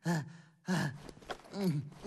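A cartoon character's voice letting out three short, weary sighs, each dropping in pitch.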